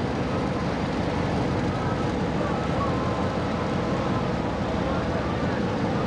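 Passenger ship's engine running steadily under way: a constant low rumble with no breaks.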